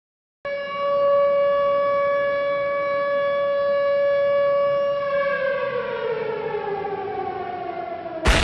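A siren-like tone starts suddenly about half a second in, holds one steady pitch for about four and a half seconds, then slides slowly downward like a siren winding down.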